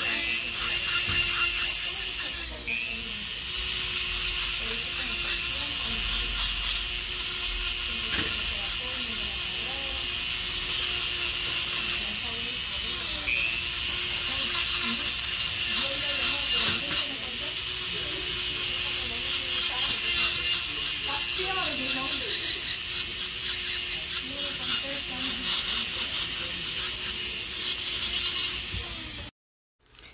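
Electric nail drill running against acrylic nails: a steady motor whine with a grinding hiss over it, which cuts off abruptly near the end.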